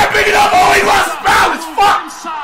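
A man yelling wordlessly in excitement, in several loud high-pitched bursts, with a stadium crowd cheering underneath.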